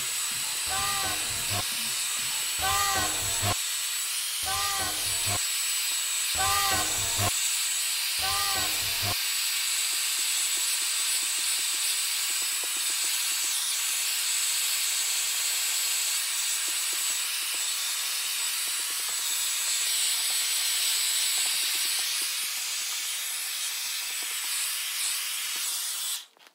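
Hair dryer blowing steadily, warming vinyl stickers on a wooden tabletop so they soften and adhere, with a thin high whine over the air noise. For the first nine seconds a short pitched sound repeats about every two seconds over it.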